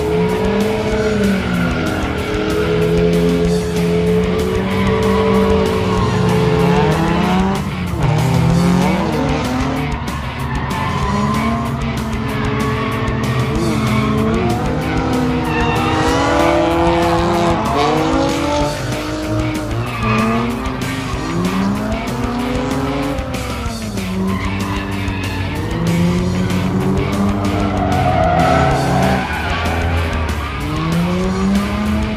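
Two drift cars sliding in tandem, one of them a Mazda RX-7 with a rotary engine. Their engines rev up and down again and again, over tyres skidding and squealing.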